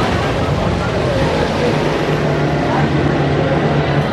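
Wooden roller coaster train with PTC cars running along its wooden track: a loud, steady rumble of wheels on the rails.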